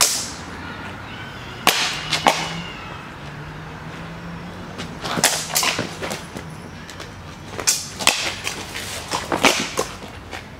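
Swords and bucklers clashing in a shamshir-and-buckler sparring bout, sharp cracks that come singly and in quick flurries: one right at the start, a pair about two seconds in, a flurry around five seconds in and another over the last two to three seconds.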